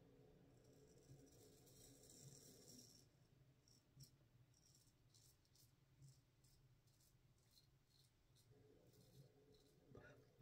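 Near silence, with faint scrapes of a Feather SS straight razor cutting lathered stubble, a few soft strokes in all.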